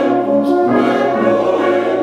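Brass band of cornets, euphoniums and tubas playing full, sustained chords, with the harmony moving every half second or so.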